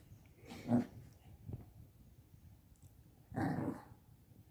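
Shih Tzu puppy growling softly while playing with a toy: one short growl a little under a second in and a longer one near the end.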